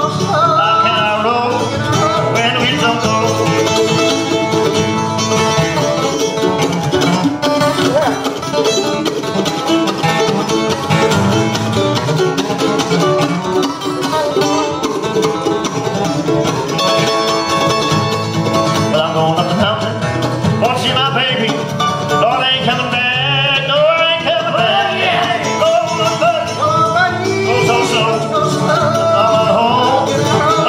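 Live bluegrass: mandolin and flat-top acoustic guitar playing with sung vocals, three voices singing harmony near the end.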